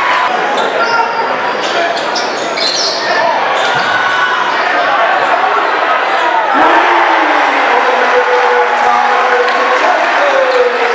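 Live high school basketball game in a large gym: a ball bouncing on the hardwood and the game's knocks over a steady hubbub of crowd voices. The crowd grows louder about six and a half seconds in, as a shot goes up.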